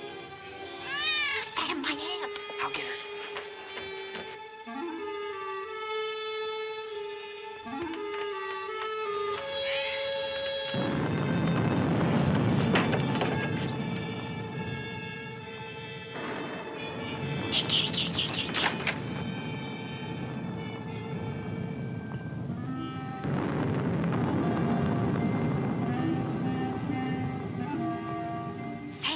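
Tense orchestral film score with held string notes, swelling loudly about eleven seconds in and again near the end. A cat meows a few times near the start.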